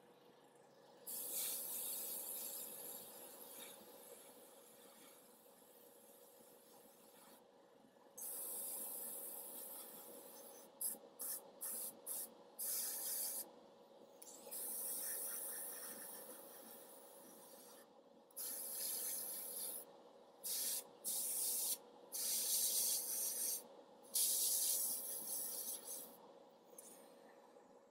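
Airbrush spraying thin coats of paint in on-off bursts of hiss, most lasting one to three seconds, with a run of short quick puffs about halfway through. A faint steady hum runs underneath.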